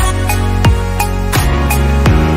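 Stock background music: soft, new-age-style chords over a slow, steady beat of deep drum hits that drop in pitch, about three hits every two seconds.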